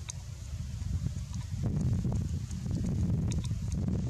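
Low rumbling wind buffeting the microphone, swelling and filling out from a little past halfway, with leaves rustling and a few short, high ticks or chirps over it.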